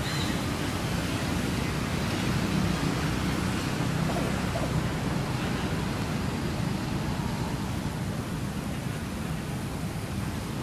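Steady rushing outdoor background noise, strongest in the low range, with no distinct sounds standing out.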